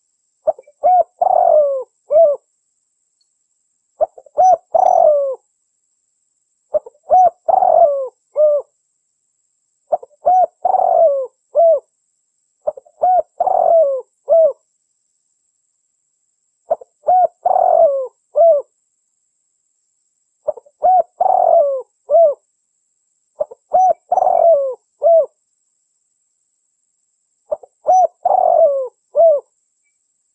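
Spotted dove cooing: a phrase of several low notes, repeated nine times at intervals of three to four seconds, with silence between phrases.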